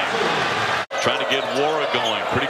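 Basketball game sound from the arena floor: crowd noise, cut off abruptly a little under a second in by an edit, then a basketball being dribbled on the hardwood under crowd noise and voices.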